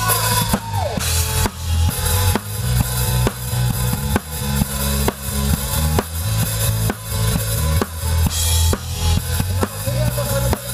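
Drum kit with Sabian cymbals played live in a band, kick and snare keeping a steady beat over bass notes and keyboard.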